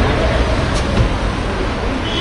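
City street traffic noise with a steady low rumble, and a short knock about a second in.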